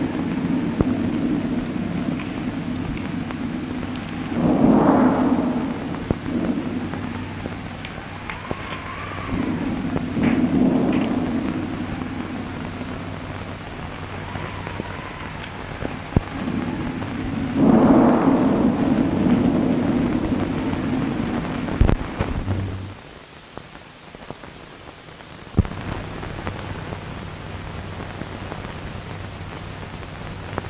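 Storm sound effects: rolling thunder and wind rising and falling in three big swells, with a thin wavering whistle of wind between them. A sharp crack comes about 22 seconds in, after which the storm drops to a quieter hiss.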